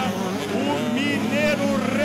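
Two-stroke 85cc motocross bikes revving as they ride through a dirt corner, engine pitch rising and falling several times, with a commentator's voice mixed in.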